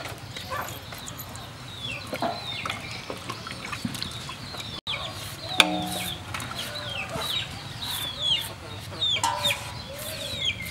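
Chickens clucking, with many short high peeps that fall in pitch, over the scrape of peelers on carrots in a basin of water.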